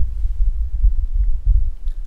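A low, uneven rumble that swells and fades several times a second, with nothing above it.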